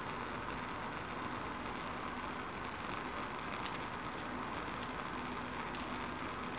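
Steady hiss of a Bunsen burner flame, with a few faint light clicks in the second half.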